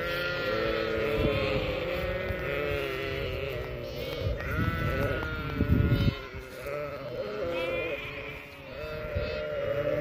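A flock of sheep and goats bleating, many wavering calls overlapping, some high and some lower, through the whole stretch. A burst of low rumbling noise, the loudest moment, comes a little past halfway.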